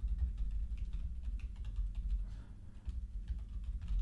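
Fast, irregular typing on a computer keyboard, a rapid run of key clicks, over a low steady hum.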